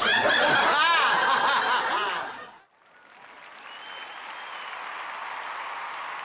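People laughing loudly for about two and a half seconds, then cutting off suddenly. After a moment of near silence, a steady background hiss slowly swells in.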